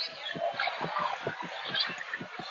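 Close-up chewing and mouth sounds of a person eating, a quick irregular run of soft low smacks several times a second, over the steady murmur of restaurant chatter.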